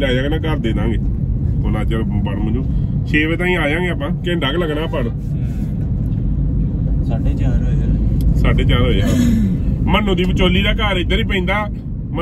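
Steady low rumble of a car's engine and road noise inside the cabin, under men talking.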